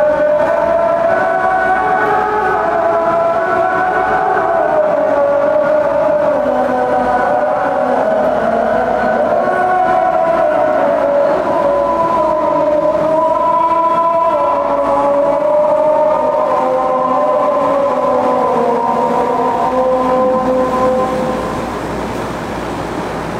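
A single voice chanting in long, held notes that slowly rise and fall, without pause for the length of the phrase, easing off near the end.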